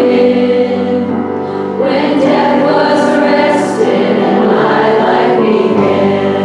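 Live worship song: young female voices singing together over instrumental accompaniment, with sustained notes.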